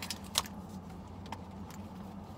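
A few light clicks and small handling noises as a leather wallet is unfolded in the hands, the sharpest about half a second in. Under them runs a steady low hum in the parked car's cabin.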